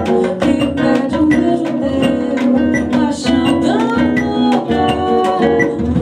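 A small band rehearsing live: a cavaquinho strummed over a steady percussion beat, with a woman singing.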